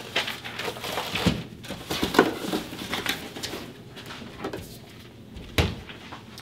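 Handling noises on a counter: sheets of paper rustling and a few short knocks and clunks as a padded gun pouch and hard gun cases are moved and set down, the sharpest knock near the end.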